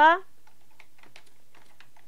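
Computer keyboard typing: a run of faint, irregular key clicks.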